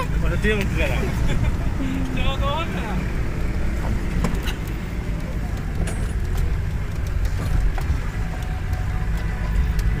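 Steady low engine and road rumble of a vehicle driving slowly over a dirt track, heard from inside the cab. Short stretches of voices come in during the first few seconds.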